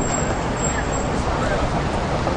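Steady city street noise: traffic running with indistinct voices mixed in.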